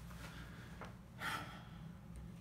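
A man's short, sharp intake of breath about a second in, over a steady low hum of room tone.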